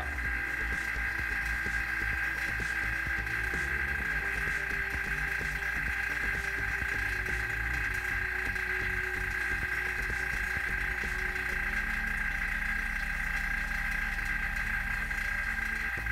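Vacuum pump running steadily as it draws the chamber down, a constant hum with a steady higher whine; its low note shifts slightly about twelve seconds in.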